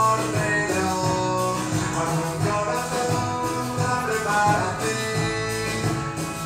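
A man singing over guitar accompaniment, his voice digitally pitch-corrected with auto-tune software.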